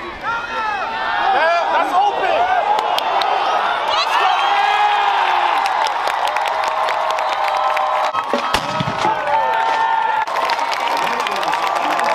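Football stadium crowd cheering, with many voices shouting and yelling at once. A sharp knock about eight and a half seconds in.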